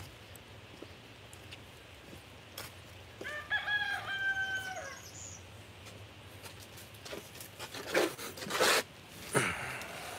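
A rooster crows once, a single drawn-out call of about two seconds, a few seconds in. Near the end come several loud, rustling noises close by.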